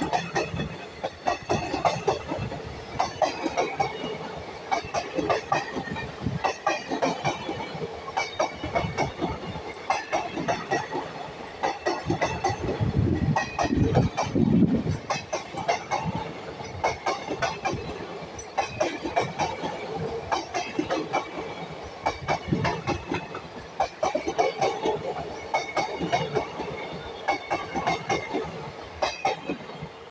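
Coaches of a long-distance express passenger train passing close by at speed. Their wheels make a fast, continuous run of clicks and knocks over the rail joints, over a steady rushing rumble.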